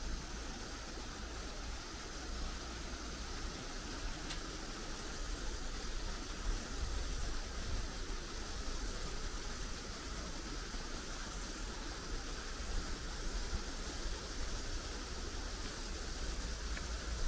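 Steady outdoor ambience: an even rushing hiss with a low rumble beneath it.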